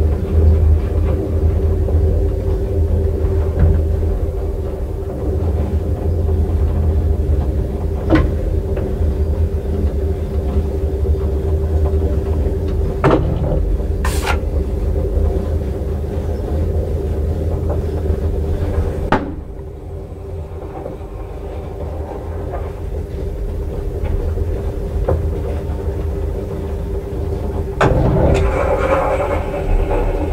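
Old JÄRNH traction elevator car travelling in the shaft: a steady low rumble with a motor hum, broken by a few sharp clicks. The running noise drops a little past the middle and grows louder and brighter near the end.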